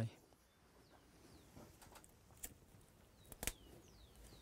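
Faint bird chirps, a few short downward-sliding notes, with two soft clicks; the louder click comes about three and a half seconds in.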